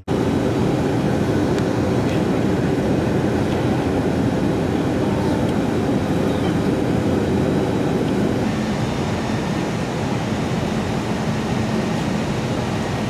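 Steady cabin noise of a jet airliner in flight: a constant rushing drone of engines and airflow with a faint low hum underneath.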